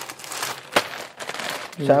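Plastic zip-lock packet crinkling as it is handled and set down, with one sharp click near the middle.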